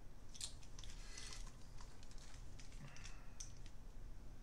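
Faint clicks and rustling as over-ear headphones are handled and put on.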